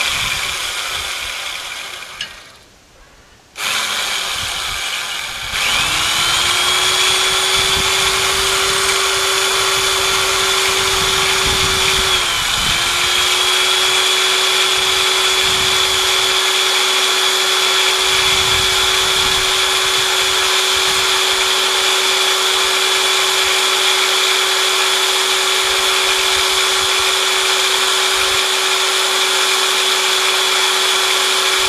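Corded electric drill boring a hole through a metal rod held in a vise. It runs for a moment, winds down and stops for a breath, then restarts and settles into a steady whine. About twelve seconds in, the pitch dips briefly as the bit bogs under load, then it runs on steadily.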